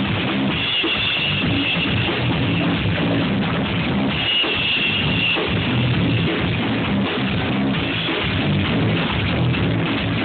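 Blues-rock band playing live, with electric guitars over a drum kit, steady and loud.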